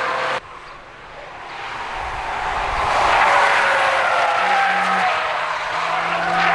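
Mazda RX-7 FD3S twin-rotor rotary engine running at high revs on track. The sound drops abruptly about half a second in, then builds to a steady loud run, its pitch easing slightly lower.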